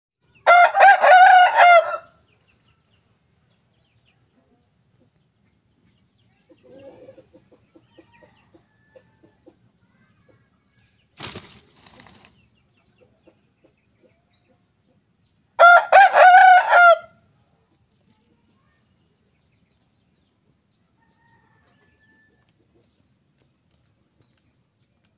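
Young Pakhoy rooster crowing twice, each crow about a second and a half long, the second some fifteen seconds after the first. Faint low clucks fall between the crows.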